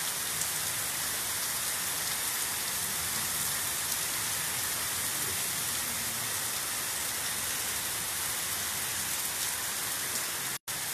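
Heavy rain pouring down in a steady, even hiss onto a flooded street.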